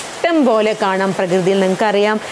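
A woman speaking without a break in a lecture-style voice.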